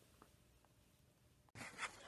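Near silence: faint room tone. About a second and a half in, it steps up to a louder background hiss with faint small noises.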